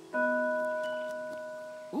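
A short musical sting: one bell-like chord struck just after the start, ringing and slowly fading away.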